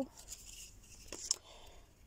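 Cardstock tags being handled and slid against one another: soft paper rustling, with two light clicks a little past a second in.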